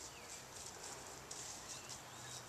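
Faint footsteps on grass, a few soft, uneven swishing steps over quiet outdoor ambience.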